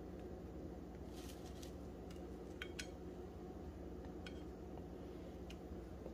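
Faint room hum with a few light clicks and taps of food and utensils against a plate, two of them close together about two and a half seconds in.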